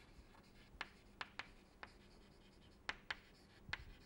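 Chalk writing on a chalkboard: a string of faint, short taps and scratches at irregular intervals as letters are chalked on.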